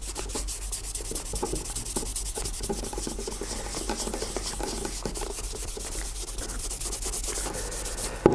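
Cotton-wool pad wet with methylated spirit rubbed quickly back and forth over a leather shoe upper, stripping off old polish: a steady, scratchy scrubbing in rapid even strokes.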